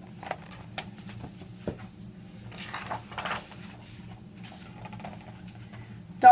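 Paper rustling and light handling clicks as a picture book's page is turned, loudest about halfway through, over a steady low hum.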